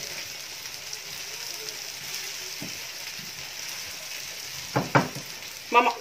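Steady sizzling hiss of food frying in oil on the stove, with short bits of a woman's voice near the end.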